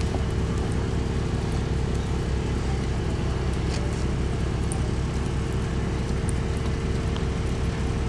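A steady low mechanical hum with a constant held tone, like a motor running without change.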